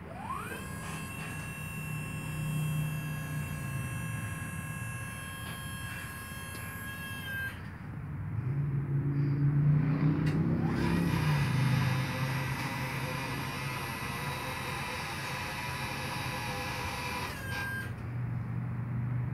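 Battery-powered DC electric hydraulic pump motor of a Genie TZ-34/20 boom lift running with a steady whine while the boom lowers the basket. It runs in two spells of about seven seconds each, spinning up quickly at the start of each. A low rumble fills the gap of about three seconds between them.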